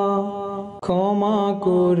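Wordless vocal drone backing an a cappella Bangla Islamic hamd, holding long low notes with a short break a little under a second in.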